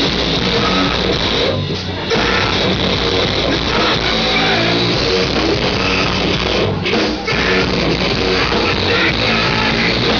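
Heavy metal band playing live and loud: distorted electric guitars, bass and drum kit. The band drops out briefly twice, about a second and a half in and again about seven seconds in.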